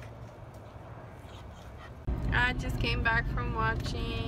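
A faint, quiet background gives way about two seconds in to a car's steady low cabin rumble, over which come several short, high-pitched vocal sounds.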